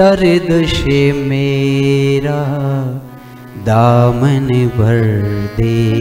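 A man singing a Hindi devotional song to Krishna in long, drawn-out held notes. The line breaks off briefly about three seconds in, then resumes with a sliding rise into another held note.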